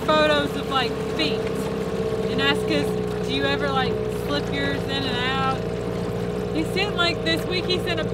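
Outboard motor of a small aluminium jon boat running steadily under way, a constant drone that holds one pitch.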